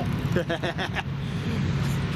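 Steady low drone of diesel locomotive engines, with a short burst of speech about half a second in.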